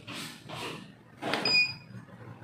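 Vacuum sealer's digital control panel giving a short electronic beep, about a second and a half in, as one of its seal-time buttons is pressed.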